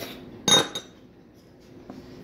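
A single sharp clink of a metal spoon against ceramic tableware about half a second in, ringing briefly with a bright tone.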